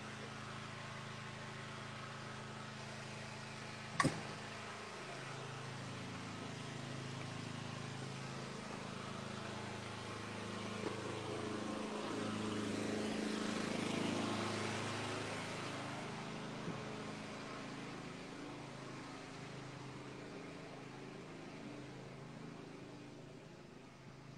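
Steady low hum of background noise picked up by a phone's microphone as it is carried while walking, with one sharp click about four seconds in. A broader rushing sound swells in the middle and fades again.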